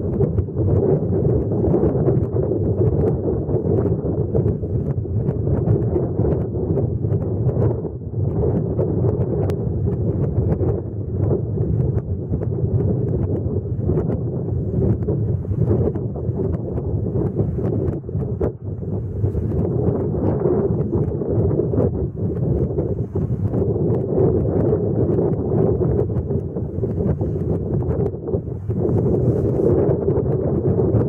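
Wind buffeting the microphone: a steady, loud rumble with no distinct events.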